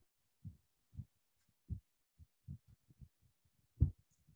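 Faint, irregular low thumps and knocks, roughly two a second, with one sharper, louder knock near the end.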